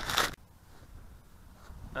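Camera handling noise: rustling and scraping as the camera is set down on the grass, cutting off about a third of a second in. Then faint outdoor ambience with a light wind rumble.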